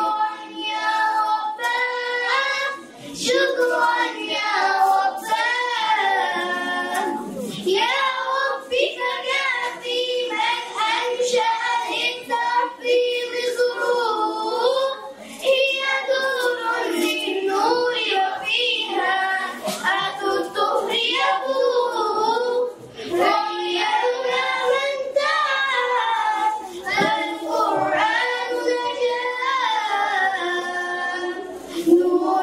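A group of children singing a song together into microphones, a sustained sung melody with girls' and boys' voices.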